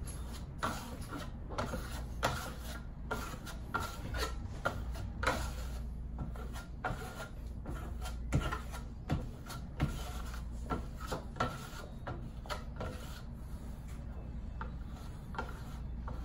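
Steel trowel scraping and rubbing over wet black marmorino Venetian plaster in short, irregular strokes about one or two a second: a wet-on-wet go-over of the dark coat.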